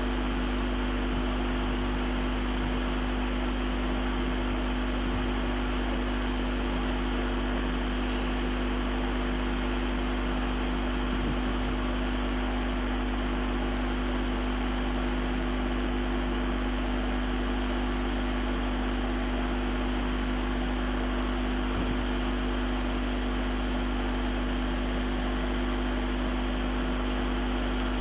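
Steady background hum and hiss with no other events: a constant low hum with a few higher hum tones over an even hiss.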